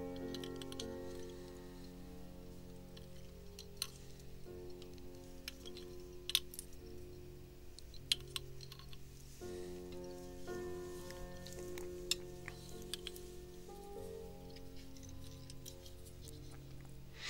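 Calm instrumental background music with sustained chords that change every few seconds, and a handful of short, sharp clicks, the loudest about six seconds in.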